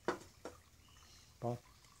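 Two sharp knocks about half a second apart: a small flower pot set down on a marble slab.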